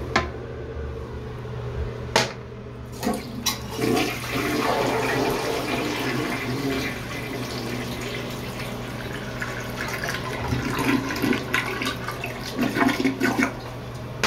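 American Standard toilet flushing: a sharp click, then a loud rush of swirling water that settles to a steady wash, ending in a run of gurgles as the bowl drains.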